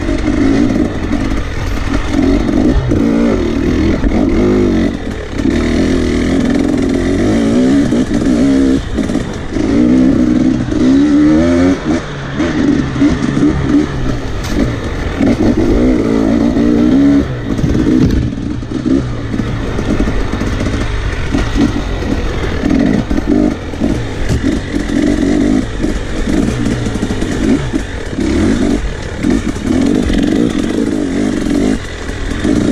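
Off-road dirt bike engine being ridden on a trail, revving up and down with the throttle, its pitch rising and falling every second or two.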